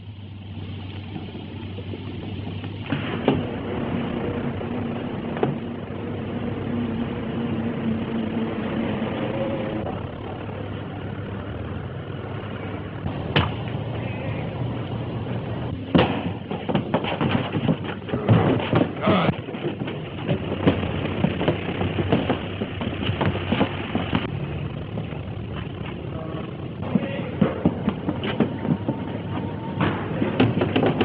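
Railway sounds on an old film soundtrack: a train running steadily, with a held tone for several seconds near the start and a run of sharp clanks and knocks in the second half.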